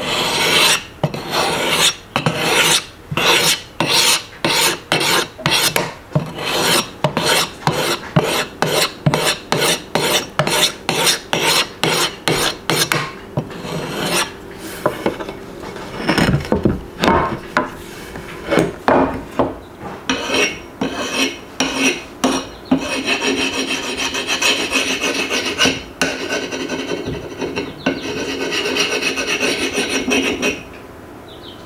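A handheld Work Sharp Field Sharpener's finer abrasive is stroked along the edge of a double-bitted axe, honing it toward a razor edge. The rasping strokes come about two a second at first and grow less regular, then turn into quicker, near-continuous rubbing for the last several seconds.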